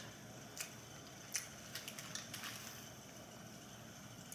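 A person quietly chewing a bite of seafood-boil sausage, with a few faint, soft clicks spread through the chewing.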